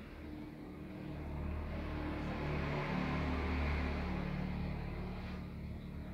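A motor vehicle passing by: a low engine hum swells to its loudest about halfway through, then fades.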